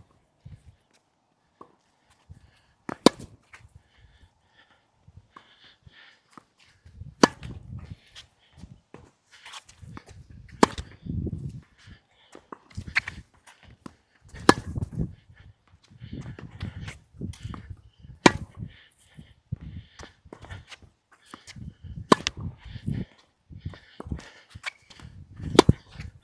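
Tennis rally: a racquet strung with Tourna Big Hitter Silver 7 Tour, a seven-sided polyester string, strikes the ball about eight times, with a sharp crack every few seconds as the ball goes back and forth.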